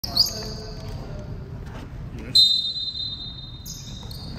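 Basketball game sounds in a gym: a ball bouncing on the hardwood court amid players' voices. About halfway through, a loud steady high whistle blast is held for over a second, the referee's whistle before the jump ball.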